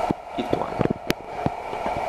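Handling noise from a handheld camera being moved over paper: a handful of small clicks and knocks, the sharpest about a second in, over a steady background hum.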